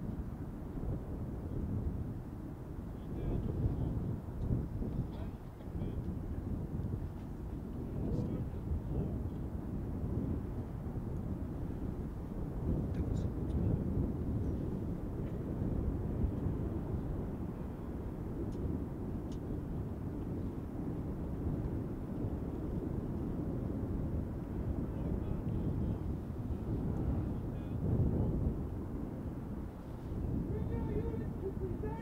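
Wind buffeting an outdoor microphone: an uneven low rumble that swells and eases throughout, with a few faint clicks.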